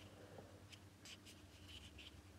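Near silence: faint rustling and rubbing of hands handling a small plastic shoe clip light, over a low steady hum.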